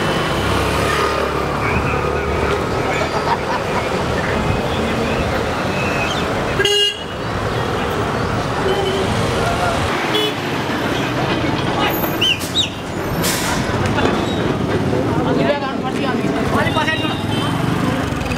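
Busy street noise: many people talking over running traffic, with a vehicle horn sounding briefly about seven seconds in.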